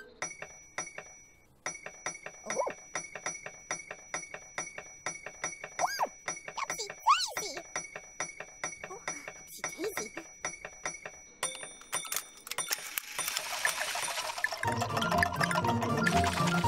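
Cartoon-style sound effect of the Ninky Nonk toy train: a fast, even ticking, about six ticks a second, under steady high chiming tones, with a few short rising whoops in the middle. Near the end the ticking gives way to lively theme music that grows louder.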